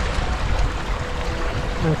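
Small waves lapping on a pebble lakeshore, with wind buffeting the microphone in an uneven low rumble and a faint steady hum underneath.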